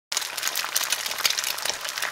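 Eggs sizzling in a frying pan, a steady dense crackle that starts abruptly as the sound comes in.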